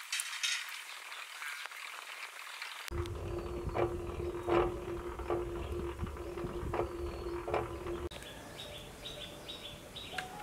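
Birds chirping outdoors. About three seconds in, a steady low mechanical hum with one held tone and a regular click roughly every three-quarters of a second starts abruptly, then stops suddenly near the end, leaving the chirps.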